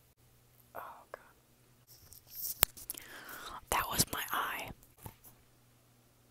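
A person whispering close to the microphone in a few short breathy phrases from about two seconds in, with one sharp click partway through and a brief breath or rustle about a second in.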